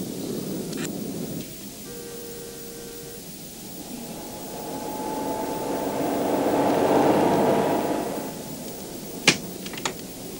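A car engine approaching, growing louder to a peak and then easing off as the taxi slows to a stop, with a sharp click near the end.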